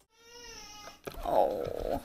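Baby crying in two cries, the second louder.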